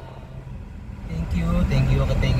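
Low steady rumble of road and engine noise inside a moving car's cabin, with a man's voice starting about a second in.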